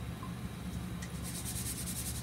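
Steady low hum of an indoor aquaponics system, with a fast, high-pitched rattling of about a dozen ticks a second starting about a second in.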